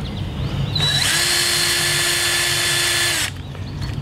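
Cordless drill starting about a second in, running at a steady speed for about two seconds, then stopping suddenly.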